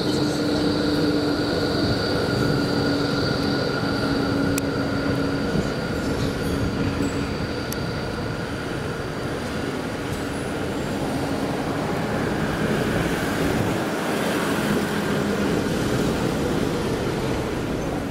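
Melbourne E-class tram departing: steady rolling and rail noise with a high, flat-pitched whine over it that is strongest in the first few seconds and fades out by about the middle.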